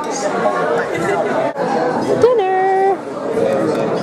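Many people talking at once around dinner tables in a large hall. About two seconds in, one voice rises and holds a single note for about half a second.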